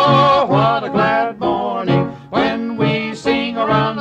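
Two men singing a gospel song in harmony with instrumental accompaniment: a held note at the start, then a run of shorter sung syllables.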